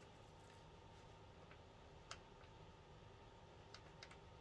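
Near silence: faint room tone with a few faint ticks, the clearest about two seconds in, from a pen being tried out on paper.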